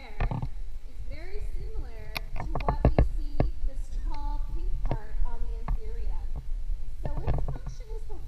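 Indistinct chatter of onlookers, including children's voices, over a steady low rumble of handling noise from the moving handheld camera.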